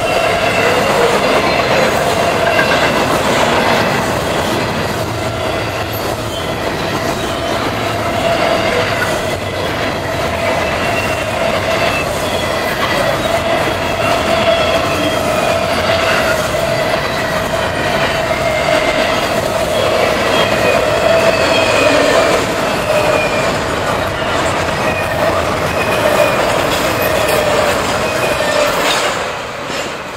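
Double-stack intermodal well cars rolling past at speed: a steady rumble with wheel clicks over the rail joints and a sustained wheel squeal. The sound fades near the end as the last cars go by.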